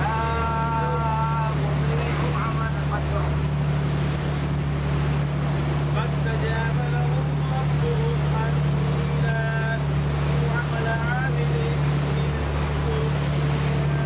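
Boat engine running with a steady, unbroken low drone. People's voices come and go over it at times.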